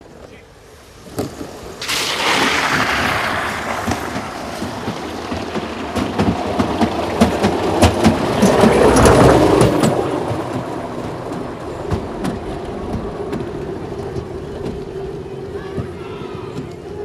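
Wheeled summer bobsleigh rolling down a metal rail track. A rumble with clicks and knocks builds about two seconds in, is loudest around the middle, then slowly fades as the sled slows.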